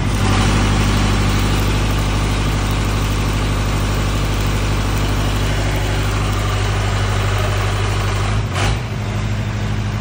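Generator set's engine running steadily under load, with the hissing crackle of a MIG welding arc over it; the arc starts at the beginning and stops about a second and a half before the end.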